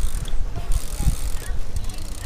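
A BMX bike being ridden along an asphalt street: a steady rumble from the tyres on the road, with wind buffeting the microphone.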